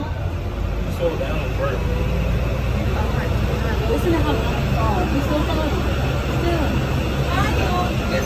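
Indistinct chatter of several people over a steady low rumble.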